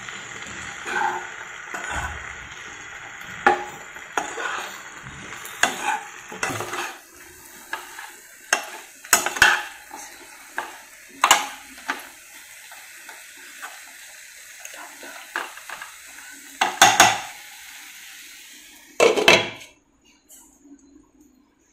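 Spatula scraping and knocking against a nonstick kadai as frying eggplant, tomato and onion are stirred, over a sizzle that thins out after the first several seconds. Louder clanks near the end as a glass lid goes onto the kadai.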